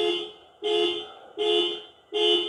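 Vehicle horn sounding in short, steady two-tone honks, three of them, repeating about every three-quarters of a second.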